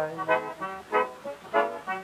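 Piano accordion playing a rhythmic accompaniment of short chords between sung lines, heard on a 1929 sound-on-disc recording.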